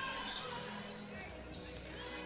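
Low game sound from a basketball court in a large indoor gym: a basketball dribbled on the hardwood with a couple of faint sharp knocks or squeaks, and faint voices.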